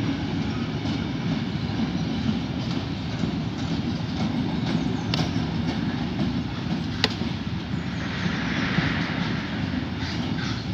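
Freight wagons of a mixed freight train rolling past: a steady rumble of steel wheels on rail, with a sharp metallic click about seven seconds in.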